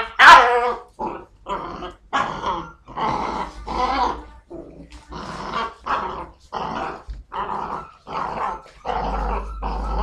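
A puppy growling in short repeated bursts, about two a second, while tugging on a rag, with one louder, higher-pitched yap just after the start.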